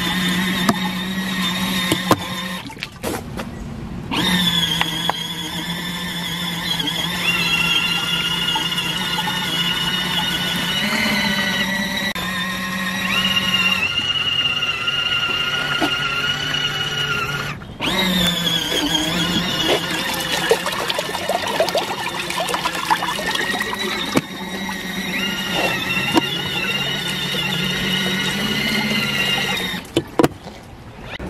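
Motors of compact portable washing machines whining as they agitate a load, with a low hum and a high-pitched whine that shift in pitch. The motors stop briefly about 3 seconds in and again near 18 seconds as the agitator changes direction.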